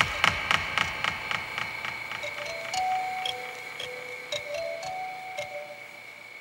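Small hand-held music box being played: a run of clicks about four a second, with short plucked notes stepping up and down from about two seconds in, over a steady high whine.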